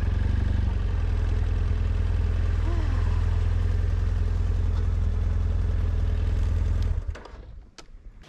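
BMW F800GS parallel-twin motorcycle engine running steadily at low speed, then cutting off suddenly about seven seconds in.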